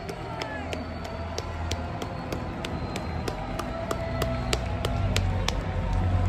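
Music over a hockey arena's sound system with a steady beat of about three a second, over the noise of a large crowd, heard from high in the stands.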